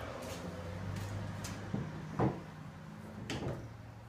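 A person's footsteps and light knocks and scuffs of gear being handled on a small plastic boat, a few separate knocks with the strongest about halfway through, over a steady low hum.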